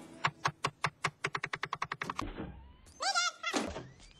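A fist knocking on a wooden door: about twenty sharp raps in two seconds, coming faster and faster. A short wavering voice follows about three seconds in.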